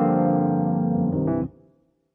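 EZKeys Electric MK I, a Rhodes-style electric piano with a chorus preset, playing back sustained chords from MIDI, with a few new notes coming in about a second in. The sound cuts off suddenly about one and a half seconds in.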